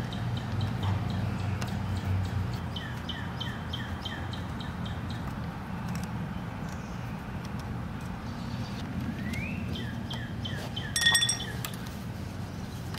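Small songbird chirping, a quick run of short repeated notes, over a low steady background hum. A sharp clink near the end.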